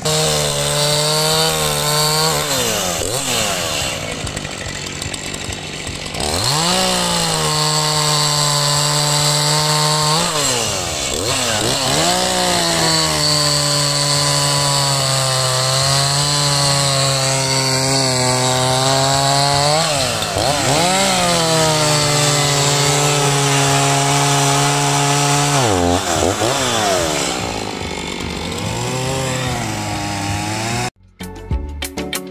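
Echo CS-4510 two-stroke chainsaw cutting through logs, about five cuts in a row. Each cut starts with the engine revving up, then its pitch settles lower and steady while the chain is in the wood. The engine eases off near the end.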